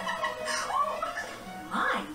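A cartoon episode playing on a TV: background music with short high-pitched character voices.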